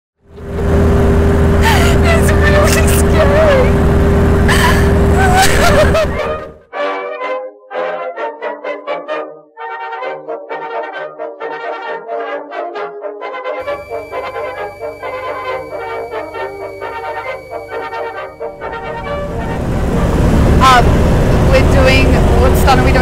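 Light aircraft engine droning steadily as heard inside the cockpit, with voices over it; about six seconds in it cuts to background music with a regular beat, and the engine drone rises back in near the end.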